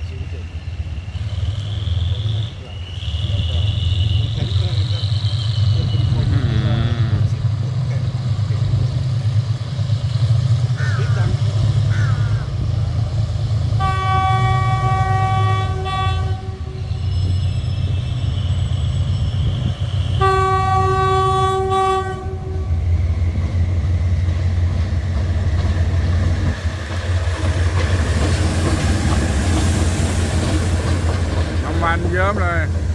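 Diesel-electric locomotive of the State Railway of Thailand (No. 4007) pulling a passenger train into a station, its engine running with a steady low rumble as it approaches. Two long horn blasts sound about 14 and 20 seconds in, each lasting about two and a half seconds.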